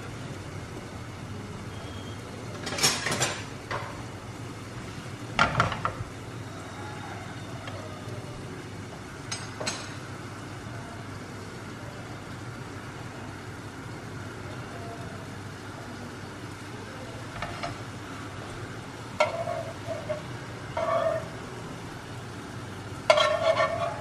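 Paalada batter cooking in a non-stick frying pan on a gas burner: a steady low sizzle and hiss, broken by a handful of short clatters and scrapes of metal utensils against the pan.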